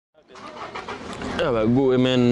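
Outdoor background noise fades in out of silence, and about one and a half seconds in a man's voice starts speaking.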